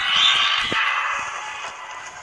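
Heavy door swinging open as a cartoon sound effect: a sudden loud scraping rush that fades slowly over about two seconds, with a dull knock about two-thirds of a second in.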